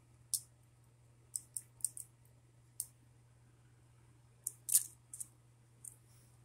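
Small, sharp clicks and taps of hard plastic Bakugan toy balls being handled, about ten of them at irregular spacing, the loudest a cluster a little before the end.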